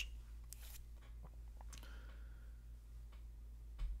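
Quiet room tone from the narrator's microphone: a steady low hum with a few faint clicks.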